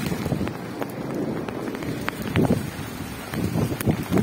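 Footsteps of people walking on pavement: a few irregular scuffs and clicks.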